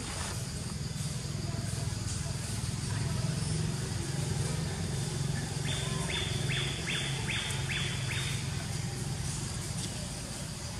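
A bird chirping about six times in quick succession, about two chirps a second, a little past the middle, over a steady low rumble.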